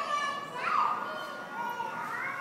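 A child's high-pitched squeals, one right at the start and another just before a second in, with background chatter of a large indoor hall.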